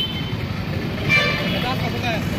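Busy bus-stand din: vehicle engines running with background voices, and a short horn toot about a second in.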